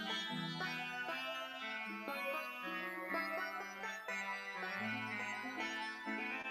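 Slow instrumental music on a plucked string instrument, with notes and chords struck one after another and no voice.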